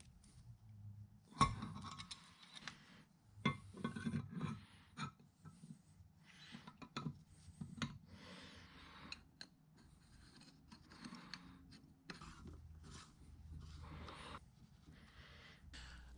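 Faint handling of small metal parts as a split bronze bushing, its key and a steel lock ring are fitted by hand: light metallic clicks and knocks, the sharpest about a second and a half in and a cluster a few seconds later, with soft rubbing and scraping between.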